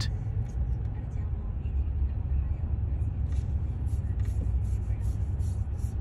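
A car running: a steady low rumble with a faint hiss above it.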